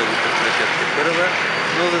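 Steady city road-traffic noise, with a man's voice speaking Bulgarian in the second half.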